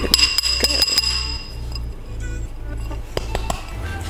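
Metal spoon clinking against a blender jug as powder is tapped in: a quick run of ringing clinks in the first second and a half, then a few more near the end. Background music plays underneath.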